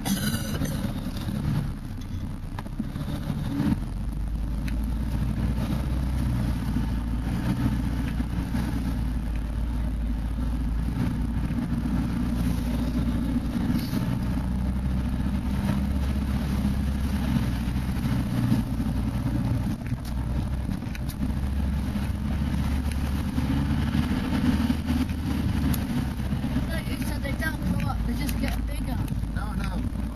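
Off-road 4x4 engine running steadily while the vehicle drives over a rutted, muddy woodland track, heard from inside the cab. The sound is a continuous low rumble whose pitch shifts a little as the revs rise and fall.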